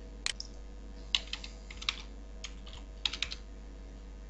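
Keys tapped on a computer keyboard, about a dozen irregularly spaced keystrokes, over a faint steady hum.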